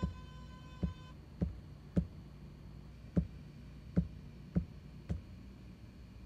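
About nine short, low knocks, unevenly spaced roughly one every half to one second, from drum pads on a PreSonus ATOM pad controller, over a steady low hum. A held pitched tone cuts off about a second in.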